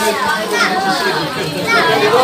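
A crowd of children chattering and calling out over one another, with no music playing.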